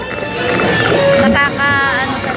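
Dark-ride soundtrack over the ride's speakers: music mixed with warbling electronic sound effects, with a held tone a little over a second in and a wavering, pitch-bending effect near the end.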